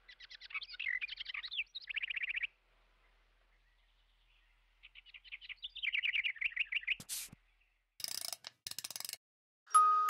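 Small birds chirping in rapid trills, in two spells a couple of seconds long with a pause between. About seven seconds in comes a short sharp noise, then two brief rustling bursts, and just before the end glockenspiel-like music begins.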